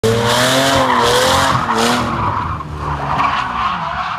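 Older BMW sedan doing a burnout donut: the engine revs high while the spinning tyres squeal, and the engine note wavers up and down. After about two seconds it gets quieter, and the pitch falls near the end as the car pulls away.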